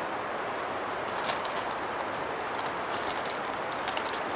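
Wood campfire crackling, with scattered sharp pops and snaps from about a second in, over a steady rushing background.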